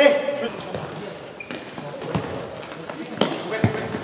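Futsal ball being kicked and played on a sports-hall floor, with a few sharp knocks and short high squeaks of court shoes, over players' voices.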